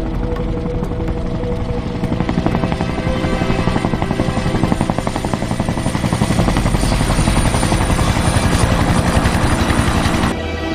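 Large military transport helicopter coming in to land, its rotor chopping rapidly and growing stronger and louder after about two seconds. Film score music is held underneath.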